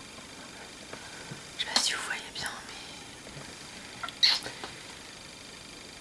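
Brief breathy vocal sounds from a person, like whispering, twice: about two seconds in and again just past four seconds, over a steady low hiss.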